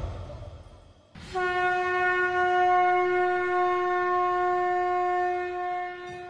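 Conch shell (shankh) blown in one long steady note that starts a little over a second in and holds for about five seconds.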